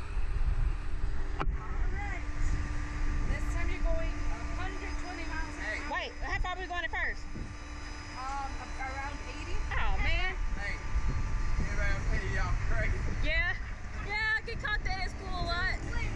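A steady hum over a low rumble, with short bursts of the two girls' high voices about six, ten and fourteen seconds in, as they sit strapped into the Slingshot ride waiting to launch.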